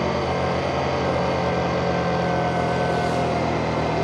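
Motorcycle engine running at a steady pace while riding, its note holding even with no revving or gear change.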